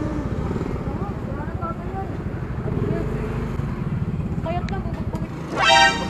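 A motorcycle engine running close by, a low, steady rumble, with faint voices in the background. A brief loud tone sounds near the end.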